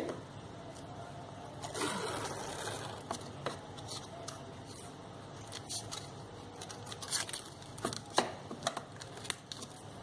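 Green floral tape pulled off its roll with a soft rustle, then scissors cutting the strip, heard as a few sharp clicks and snips in the second half.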